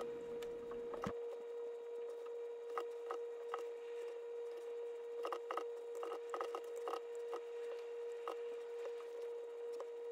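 Light, irregular clicks and taps from a USB mouse fitted with a force-sensitive resistor, being pressed and slid on a mouse pad to draw brush strokes. A faint steady hum runs underneath.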